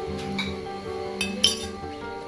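Metal spoon clinking against a ceramic bowl three times, the loudest strike about a second and a half in, over steady background music.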